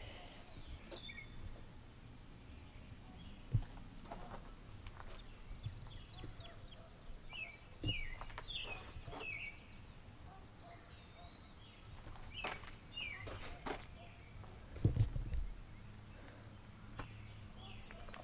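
Faint outdoor ambience of birds chirping and calling, short rising and falling chirps throughout, with a few scattered knocks and a steady faint low rumble.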